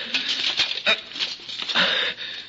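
A man's strained, gasping breaths and short grunts, coming in several irregular bursts: a dying man struggling for air as he raises his horn.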